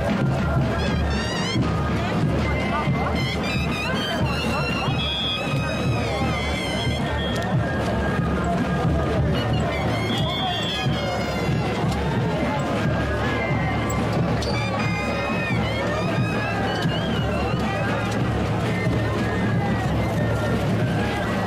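Moseñada music played by a troupe of moseño flutes with drums, running steadily, with crowd voices and chatter over it.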